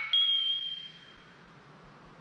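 A single high, bright ding from a logo sound effect that strikes just after the start, rings on one pitch and fades over about a second, leaving a faint hiss that dies away.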